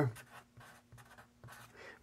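Black felt-tip marker writing a short word on paper: a series of faint, quick scratchy strokes.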